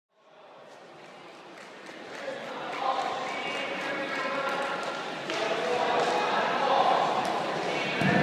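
Voices echoing in a large gymnasium, people talking and calling out, with scattered knocks. The sound comes in just after the start and grows louder, and the voices are loudest near the end.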